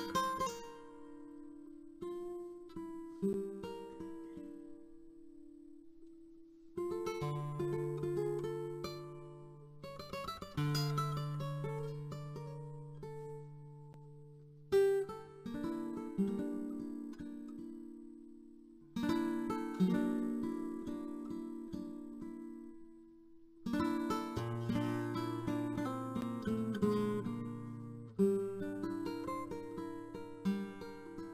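Flamenco guitar played solo on a nylon-string Spanish guitar: strummed chords and short phrases, each left to ring and fade before the next one starts, about every four seconds.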